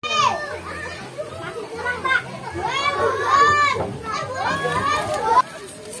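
A group of children's voices, many shouting at once and overlapping; the shouting cuts off suddenly about five seconds in.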